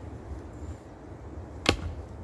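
A single sharp knock of a split piece of firewood being put down, about one and a half seconds in, over a low steady rumble.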